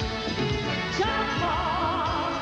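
Live band playing an upbeat pop-country song. About a second in, a woman's voice comes in on a long high note that wavers with vibrato.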